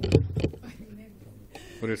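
Speech only: a few short words from men at the start, then a man starting to read out a vote count near the end.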